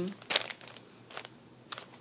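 A clear plastic zip-top bag crinkling as it is handled: a few short crackles with quiet between, the sharpest near the end.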